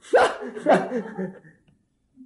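A man chuckling: a few short laughs that fade out about a second and a half in.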